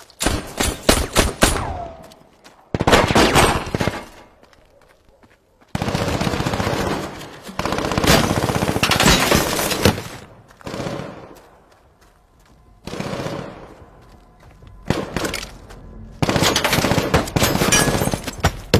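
Bursts of automatic rifle fire in a gunfight, about seven bursts with short gaps between them, the longest lasting several seconds in the middle.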